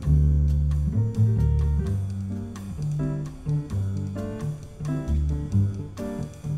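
Jazz piano trio of piano, double bass and drums playing. Long held low bass notes are the loudest part, with shorter piano notes and light drums above them.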